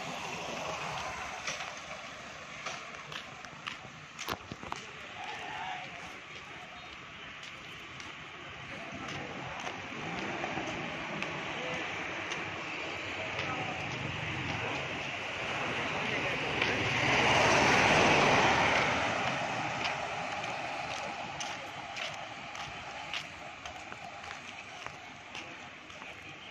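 Outdoor street ambience on a nearly empty city road: a steady noise haze with scattered clicks. It swells to its loudest about two-thirds of the way through, then fades again.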